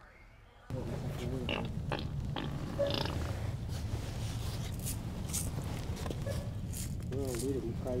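Fake fart sounds from a prank fart machine, low and wavering, beside a man talking.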